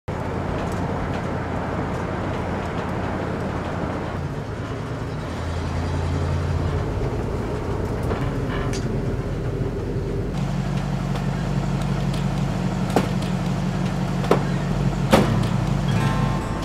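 Engine and road noise inside the cabin of an old van on the move, a steady low engine hum whose note shifts a couple of times. Three short, sharp clicks come near the end.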